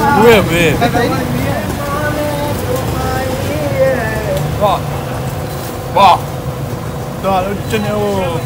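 Street ambience: a steady low rumble of vehicle traffic, with voices of people talking close by. One voice is briefly louder about six seconds in.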